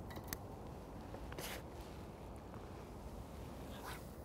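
Faint outdoor background with a few light clicks and a brief swish about a second and a half in: a float rod being cast, with line running off a fixed-spool reel.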